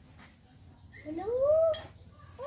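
Baby macaque giving one drawn-out coo call about a second in, rising in pitch and then levelling off.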